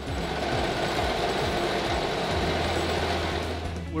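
Tractor-mounted row planter working through tilled soil: steady mechanical clatter and noise of the planter and tractor running, easing slightly near the end.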